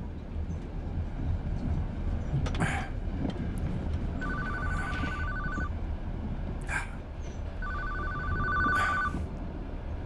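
A mobile phone ringing twice, each ring a trilling two-note tone lasting about a second and a half, over the steady low rumble of a moving train carriage, with a few light knocks of handling.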